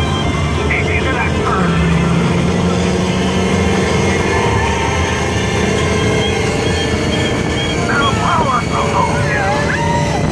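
Open-top Radiator Springs Racers ride car speeding along its track: a steady loud rush of wind and running noise, with riders' voices rising in shouts near the end.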